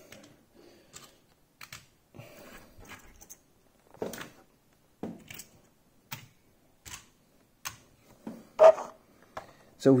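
Small die-cast toy cars being picked up and set down on a wooden tabletop: scattered light clicks and knocks, about one a second, with one louder knock near the end.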